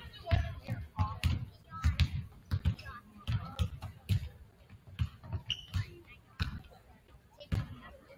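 Several basketballs bouncing on a hardwood gym floor at once, an irregular stream of thuds from players dribbling, with voices in the background.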